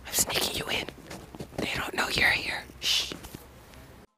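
A person whispering close to the microphone in short breathy phrases, with a few light clicks; it trails off quieter near the end.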